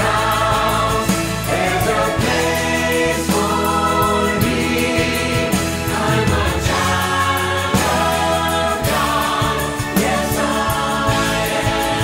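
Mixed SATB choir singing a gospel-style choral anthem in full harmony, with piano and band accompaniment.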